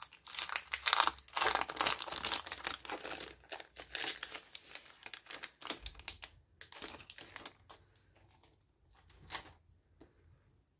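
Clear plastic sleeve crinkling as it is peeled off a small notepad: dense crackling for most of the first eight seconds that thins out, then one short rustle near the end.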